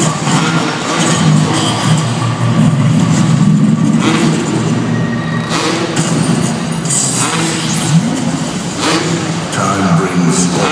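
Freestyle motocross dirt bike engines revving inside an arena hall, the pitch rising and falling a few times near the end, over loud music.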